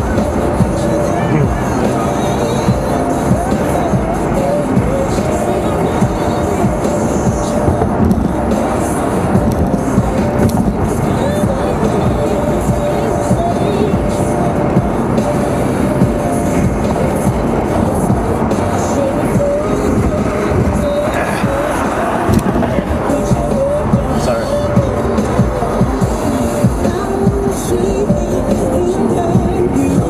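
Music playing on a car radio inside a moving car's cabin, with road and engine noise underneath.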